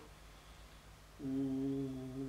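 A second of room quiet, then a man's voice in a steady, drawn-out hesitation hum ("mmm") on one level pitch, starting about a second in.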